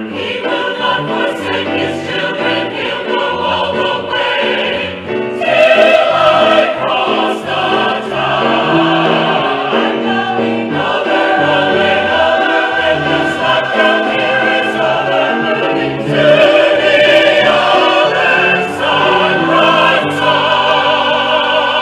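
Large mixed choir singing a Southern gospel convention song in full chords, with piano accompaniment.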